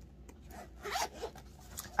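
Zipper on a fabric Nintendo Switch carrying case being pulled open in a couple of soft, scratchy strokes.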